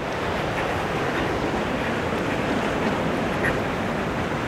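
Steady rush of sea surf washing on the beach, mixed with wind.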